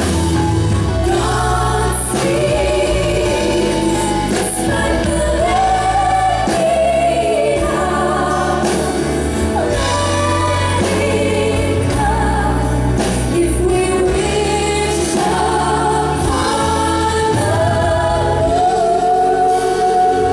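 Live music: two women singing together into microphones, backed by a choir, with flute and a low sustained bass underneath. A long held note begins near the end.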